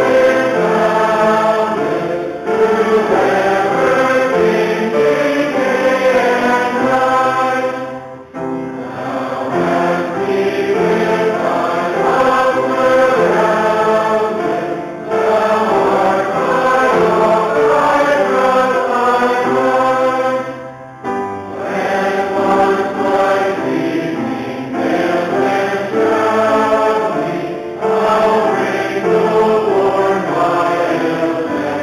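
Congregation singing a hymn together, in long held phrases with a brief break for breath about every six seconds.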